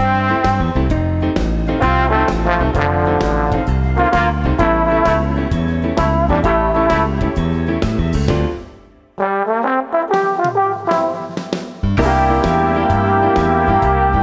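Instrumental music with a trombone playing the melody over piano, synth and a steady beat. About two-thirds of the way through the band drops out suddenly for a thinner break without the bass, then the full arrangement comes back in near the end.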